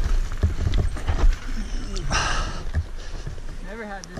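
Mountain bike rattling and knocking over a rocky dirt trail, slowing to a stop. A short hiss comes about two seconds in, and a person's voice near the end.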